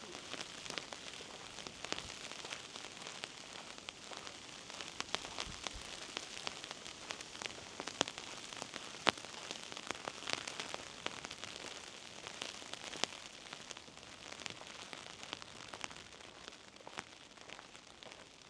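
Light rain falling on an umbrella overhead: many irregular, sharp drop taps over a steady hiss of rain.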